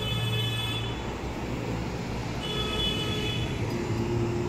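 Road traffic noise from a busy street: vehicles and trucks running, steady throughout, with a faint high steady tone briefly near the start and again about two and a half seconds in.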